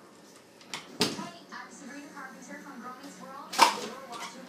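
A door shutting with a thump about a second in, then a louder, sharper knock near the end, with faint muffled talk in between.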